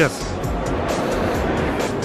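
Steady hubbub of a crowded indoor exhibition hall: background voices and music blended into an even wash of noise.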